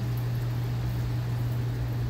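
A steady low mechanical hum with an even hiss over it, unchanging throughout.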